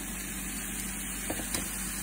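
Steady low hum and hiss at the stove, with a few faint light taps a little past the middle as the last of the salsa is knocked from a measuring cup into a cast iron skillet.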